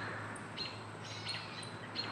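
Small birds chirping faintly: a few short, high chirps over a soft outdoor hiss.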